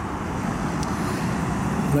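Steady background noise of road traffic.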